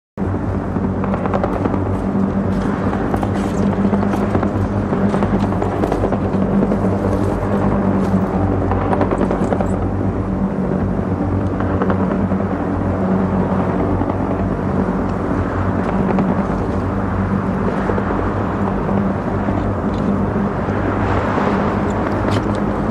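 A steady low drone that holds one pitch throughout, with a rough, noisy layer above it.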